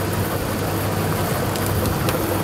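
A lottery ball draw machine running, with balls mixing in its clear chambers. It makes a steady air noise over a low hum.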